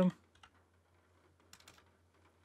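A few faint keystrokes on a computer keyboard as a search is typed, a couple near the start and a small cluster about one and a half seconds in.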